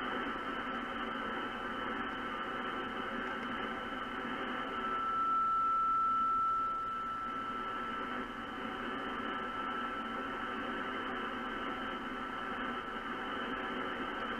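Radio receiver audio: a steady hiss of band noise with a thin, steady whistle. The whistle is the suppressed carrier of a homebrew MC1496 double-sideband transmitter heard as a beat note, about 40 dB down, and it is louder for a couple of seconds in the middle.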